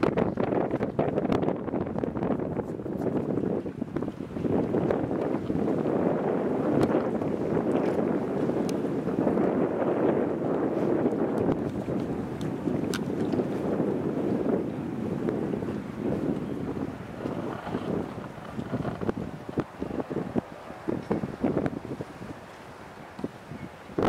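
Wind blowing across the camera's microphone, a gusty noise that swells and falls and turns choppy near the end.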